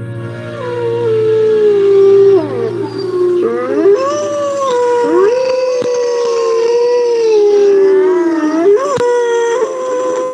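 Wolves howling: long howls that slide down and back up in pitch, one held steady for several seconds, with howls overlapping at times.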